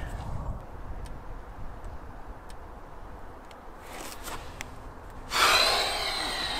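A few light clicks of wooden hive frames being handled, then a loud, long breath out, a sigh, near the end.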